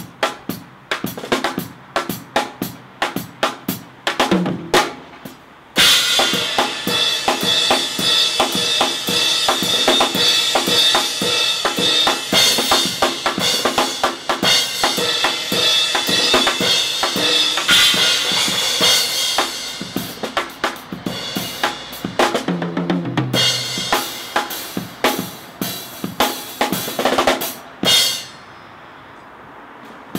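A drummer plays a full acoustic drum kit: kick and snare hits at first, then from about six seconds in a loud, dense stretch with the cymbals ringing continuously. Later comes a fill stepping down in pitch, and the playing stops on a final hit shortly before the end.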